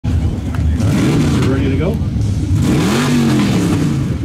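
Engines of two staged mud drag pickup trucks idling and being revved at the starting line, with a low steady rumble and the pitch rising and falling about two and three seconds in.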